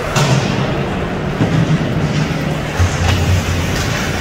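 Ice hockey players and sticks knocking against the rink boards and glass: a sharp thud just after the start and a few more knocks, over a steady low arena hum.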